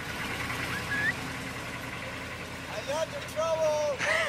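Military truck's engine running as it drives away, with short voices calling out about a second in and near the end.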